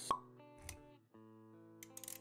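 Intro jingle sound design: a sharp pop right at the start, a short low thump a little later, a brief gap, then steady sustained music notes.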